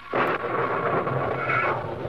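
A sudden rumbling crash, a dramatic radio-drama sound effect, starting with a sharp crack a fraction of a second in and rumbling on as a loud wash.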